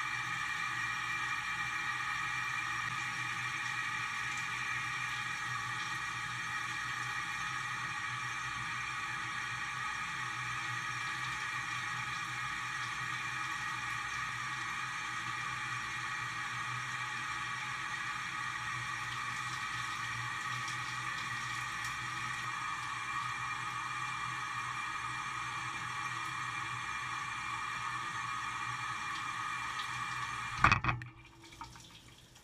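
Shower spray running steadily, water streaming down close to the microphone as a constant rushing hiss.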